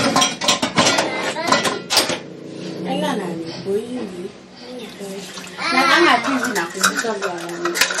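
Quick clinks and knocks of a measuring cup and kitchen items against a glass mixing bowl and the counter, with lukewarm water being poured into the bowl, during the first two seconds. Voices talk in the background later on.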